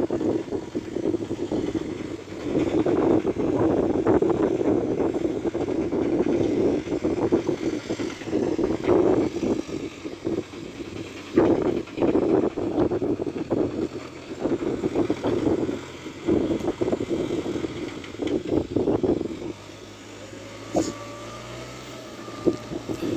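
A 6610 tractor's diesel engine working in a muddy paddy, heard from afar under gusty wind buffeting the microphone. Near the end the wind eases and the engine's steady hum comes through more plainly.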